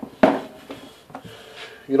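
One sharp knock about a quarter second in, then a few light clicks: a steel screwdriver being picked up from among hand tools on a wooden workbench.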